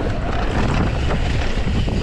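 Wind rushing over the camera microphone while an electric mountain bike's knobby tyres rumble over a dirt trail at speed, a steady low noise with faint rattles.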